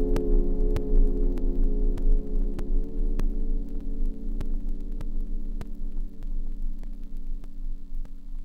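Prophet Rev2 analog polysynth (DCO voices) holding a sustained chord that slowly fades out, over a steady low electrical hum. Faint clicks repeat evenly about every 0.6 s.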